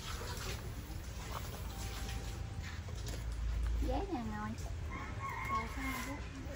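A rooster crowing once near the end, a single held call lasting about a second.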